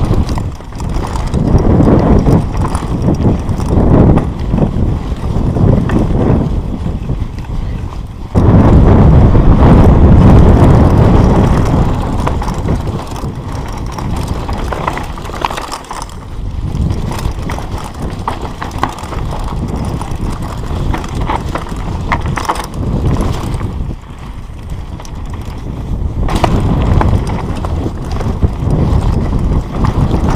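Mountain bike ridden fast down a rocky dirt trail, heard from a camera on the rider: a heavy rush of wind on the microphone and tyres on dirt and stones, broken by frequent sharp knocks and rattles from the bike. The rush grows loudest for a few seconds about a third of the way through.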